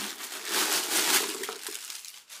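Packing paper crinkling and rustling as it is pulled out of the inside of a new handbag, strongest in the first half and dying away toward the end.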